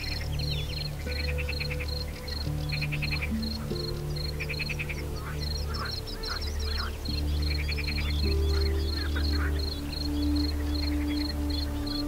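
Calm ambient music of slow, sustained low tones, over a nature-sound bed: a high, even insect chirping at about four chirps a second, repeated short raspy animal calls a couple of times, and scattered bird chirps.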